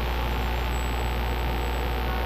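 Steady low hum with a faint hiss and a thin high-pitched whine, and no distinct events. It holds unchanged across the cut from a bus interior to an outdoor scene, so it is background noise of the TV recording rather than the bus.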